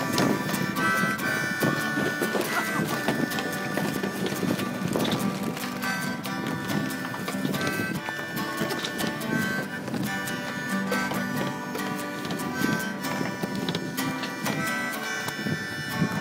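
Acoustic guitar strummed in a steady rhythm while a harmonica plays held, wavering notes over it, an instrumental passage with no singing.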